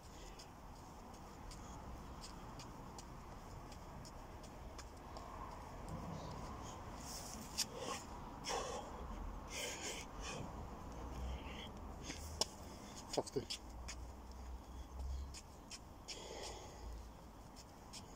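Heavy breathing and scuffing of hands and feet on grass from a man doing burpees with press-ups: short uneven breaths and movement noises through the middle, then a few sharp taps about two-thirds of the way through.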